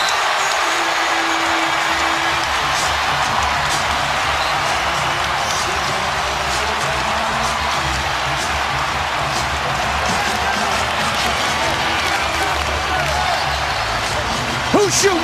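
Arena crowd cheering and applauding, loud and steady throughout, with music playing underneath.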